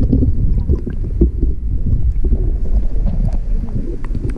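Muffled low rumble of shallow water moving around a camera held underwater, with scattered small clicks and knocks.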